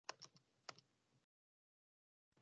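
A few faint taps on a computer keyboard, about four in the first second.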